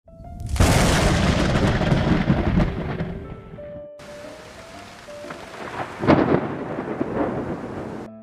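Logo-intro sound effects: a loud noisy rumble starts about half a second in and dies away over about three seconds. After a sudden break a second rumbling surge comes around six seconds in. A few soft sustained music notes run underneath.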